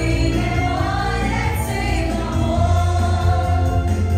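A woman singing into a microphone over a recorded backing track with a steady bass line, a Hungarian mulatós party song.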